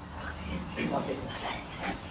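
Faint, short animal calls several times in the background during a pause in speech.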